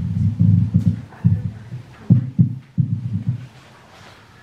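Irregular low thumps and rumbles from the pulpit's microphone stand being bumped and handled, in clusters of knocks with a boomy low ring.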